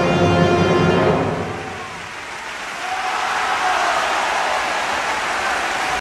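Orchestral music dies away about a second in, then a large theatre audience's applause swells up and carries on steadily.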